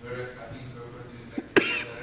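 A person coughs sharply about one and a half seconds in, after a second or so of faint, indistinct talk.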